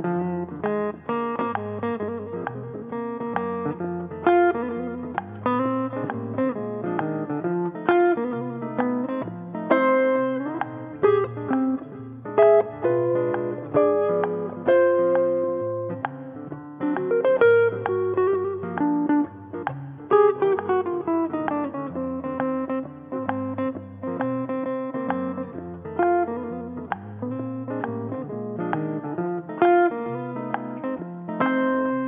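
Hollow-body archtop electric guitar played solo in a jazz style, mixing plucked chords and single-note melody lines. Some notes are held and ring on.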